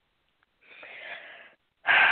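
A person's audible breath, about a second long, starting about half a second in. Just before the end a voice starts speaking.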